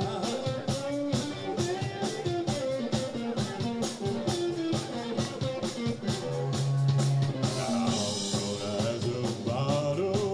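Live dance band playing a rock-and-roll style song, with a woman and a man singing into microphones over electric bass and drums, keeping a steady beat.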